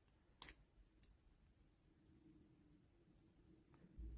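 Near silence broken by one short, sharp plastic click about half a second in, and a fainter tick near the end, as parts of a small plastic Frenzy transforming figure are snapped into place.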